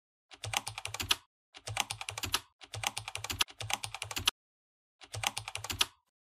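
Computer keyboard typing sound effect: five short runs of rapid key clicks, with brief pauses between them, as the on-screen title text is typed in.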